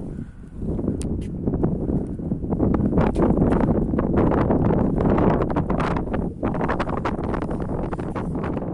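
Wind buffeting a handheld phone's microphone, a loud, dense rumble mixed with crackling from the phone being handled and rubbed.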